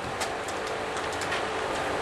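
Steady background hiss of room and recording noise, with a few faint ticks.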